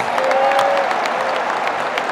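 Stadium crowd of football fans clapping and applauding, with a faint held voice calling out over the clapping in the first second or so.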